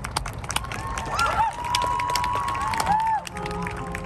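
Marching band playing its field show: many sharp percussion strikes, with pitched tones that swoop up and down in short arcs through the middle.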